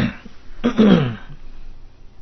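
A man clearing his throat about half a second in, a short noisy sound that falls in pitch.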